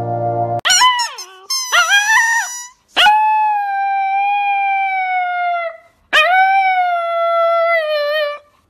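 A husky-type dog howling: a few short, rising yips, then two long, slightly wavering howls of about two and a half seconds each.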